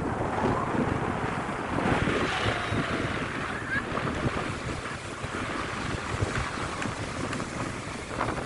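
Ocean surf breaking and washing up a sandy beach, a steady rushing, with wind buffeting the microphone.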